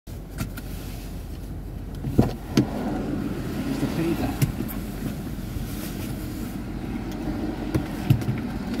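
Steady low rumble of a motor vehicle running, with a few sharp knocks and clicks, the loudest about two seconds in.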